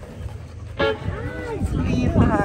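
A brass instrument tooting: a short blast about a second in, then a louder held note starting near the end, as band members sound their instruments between numbers.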